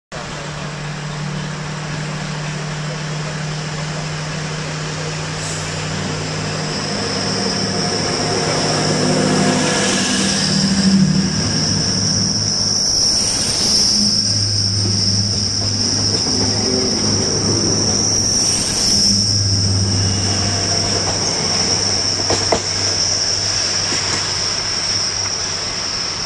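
A British Rail Class 60 diesel locomotive's engine running with a steady low hum. From about a third of the way in, a passenger train passes close by, loud, with a high steady whine over the rumble, and fades near the end.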